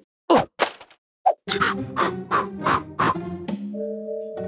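Cartoon sound effects: two quick sharp whacks in the first second, then a short gap, then background music with a fast percussive beat of about four strikes a second, ending in held notes.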